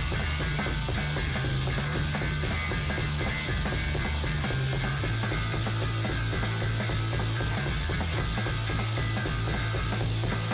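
Noise-rock track played by a guitar, bass and drums trio: heavily distorted, fuzzy guitar over fast, dense drumming, with the bass holding a low note that drops lower about halfway through. No vocals are heard.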